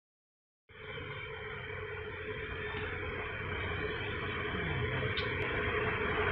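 Steady background noise with a low hum. It starts after a brief silence and slowly grows louder.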